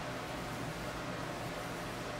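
Steady, even background hiss of room tone with no distinct sounds in it.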